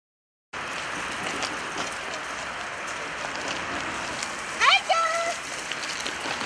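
Steady outdoor background noise. Near the end comes a brief, louder high tone that sweeps upward and then holds for about half a second.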